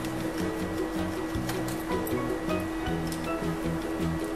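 Background music with steady held notes; no other sound stands out.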